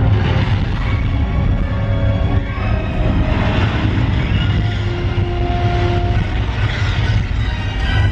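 Dark, suspenseful orchestral show music played over a theatre sound system, with held notes that change pitch over a strong, steady deep rumble.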